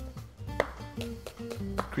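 A chef's knife chopping spring onion on a plastic cutting board: a few sharp strikes roughly half a second apart, over background music.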